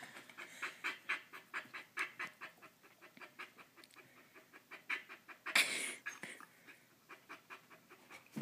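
Border collie panting quickly and softly, about five short breaths a second, fading in the middle. A short, louder burst of breathy noise comes about five and a half seconds in.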